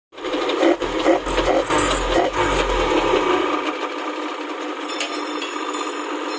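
Kawasaki 900 STS jet ski's three-cylinder two-stroke engine running steadily, with a heavy low rumble and irregular knocks over the first four seconds that then stop, leaving the steady engine sound.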